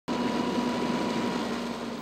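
A fire engine running steadily to pump water, a constant drone under the hiss of a hose stream spraying onto a burned structure.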